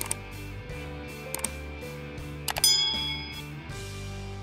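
Subscribe-button animation sound effects over soft background music: a few sharp mouse clicks, then a bright bell ding about two and a half seconds in, the loudest sound, ringing for nearly a second.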